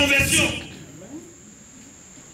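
A man's voice trails off in the first half-second. Under it and through the quiet that follows runs one steady, high-pitched whine.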